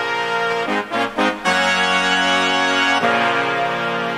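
Sampled brass section (Session Horns in Kontakt) playing held stacked chords. There is a quick run of short stabs about a second in, and the chord changes again near the end.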